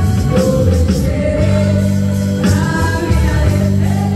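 Live gospel music: a woman singing into a microphone over electric guitar and sustained low bass notes.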